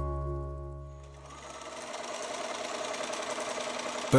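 A held music chord fades out over the first second, then an electric sewing machine runs steadily at speed, stitching in a fast, even rhythm.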